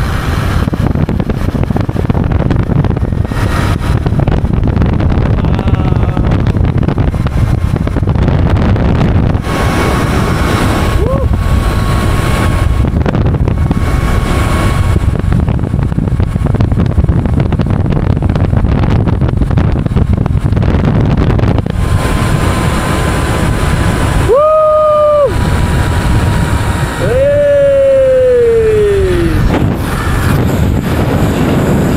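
Heavy wind buffeting a camera microphone as a rider speeds down a long, fast zip line, a steady loud rush with a faint high whine coming and going. Near the end the rider whoops twice, the second a long falling 'woo'.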